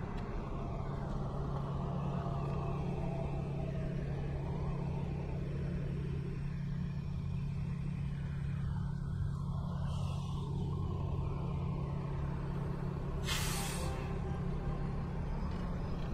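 City bus engine running close by with a steady low hum, and a short sharp hiss of its air brakes about 13 seconds in.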